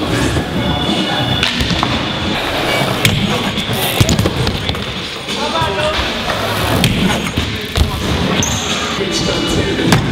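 BMX bikes and skateboards rolling on skatepark ramps, with sharp thuds of landings and impacts; the loudest comes about four seconds in. Voices and music are underneath.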